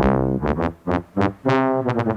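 Synthesizer music sting: a loud keyboard chord struck at once, then a few struck notes that each die away quickly, coming faster near the end.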